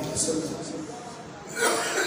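A man's voice speaking into a microphone trails off. About one and a half seconds in comes a sudden harsh cough or throat-clear, from a speaker troubled by a bad throat.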